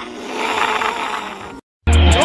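A cartoon character's rough, strained growl, swelling in loudness and cutting off abruptly about one and a half seconds in.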